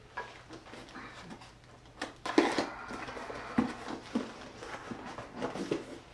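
A cardboard box being handled: scattered light knocks and rustles, a few at a time, none of them loud.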